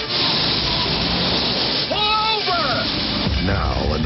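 A loud, even rushing noise, then a short cry from a voice about two seconds in that rises and falls in pitch.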